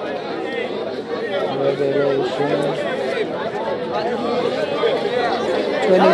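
Crowd chatter: several voices talking over one another in the background. About a second and a half in, a short steady pitched sound is held twice.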